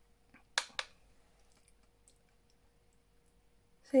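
Two short, sharp clicks about a fifth of a second apart, a little over half a second in.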